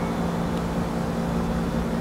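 A steady low machine hum with a constant background rush, unchanging throughout.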